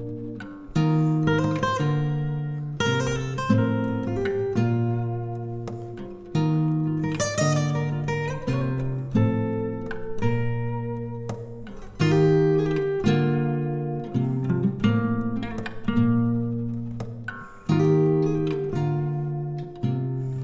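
Acoustic guitar playing a slow instrumental introduction: chords and notes plucked every second or so and left to ring out and fade.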